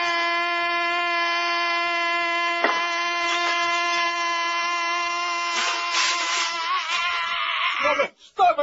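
A man singing one long held note at the end of a comic song: a steady pitch that wavers near the end and fades out.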